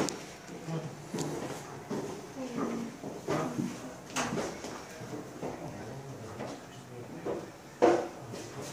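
Indistinct voices of people talking, with occasional sharp knocks and clatter, the loudest knock just before the end.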